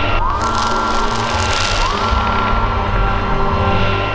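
Cartoon sound effect of a sci-fi machine energising: a rising electronic sweep repeats about every second and a half over crackling, hissing energy noise and a low rumble.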